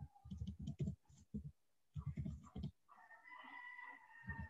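Computer keyboard typing: quiet, irregular runs of key clicks as a few words are typed.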